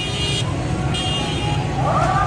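Steady low rumble of a street procession's crowd and traffic, with two short high-pitched horn toots, one at the start and one about a second in.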